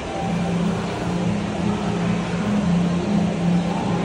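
A steady low hum that swells and fades slightly, over a constant background of noise.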